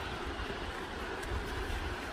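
Wind buffeting the phone's microphone: an uneven low rumble over a steady hiss.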